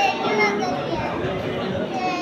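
Children's voices talking and playing, with other voices around them in a large dining room.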